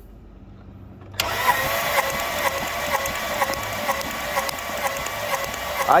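Starter motor cranking a Volkswagen Jetta's five-cylinder engine for a compression test, starting about a second in as a steady whir. This cylinder reaches only about 90 psi, low compression that the mechanic puts down to a blown head gasket unless the head is cracked.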